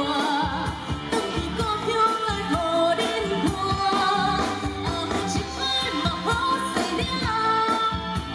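A woman singing a pop song live into a handheld microphone, backed by a live band with drum kit and keyboards through the stage sound system, over a steady drum beat.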